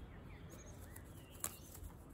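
Faint bird chirps over a low background rumble, with a single sharp click about one and a half seconds in.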